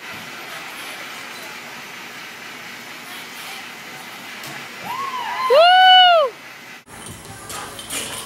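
Steady background noise of a gym, then about five and a half seconds in a short, loud, high-pitched whoop that rises and falls in pitch, after a couple of smaller ones. Near seven seconds the sound drops out suddenly and a different background follows.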